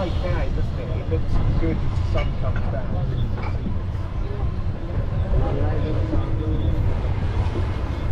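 Low, steady rumble of an open-sided passenger shuttle cart rolling along.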